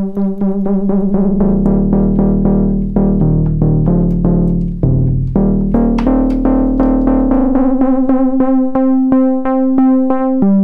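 Softube Model 82, a software emulation of the Roland SH-101 monosynth, playing a fast run of short repeated bass notes, about four a second. Its pulse-wave tone is swept by LFO pulse-width modulation, and the sweep shifts as the LFO rate is changed. A low note holds under the middle of the run, and the pitches jump around near the end.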